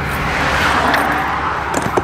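Road traffic passing on the highway: a steady rushing noise that swells a little midway, with a couple of light clicks near the end.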